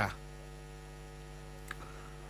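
Steady electrical mains hum from the recording setup, a low buzz with evenly spaced overtones, heard in a pause between words. There is one faint click near the end.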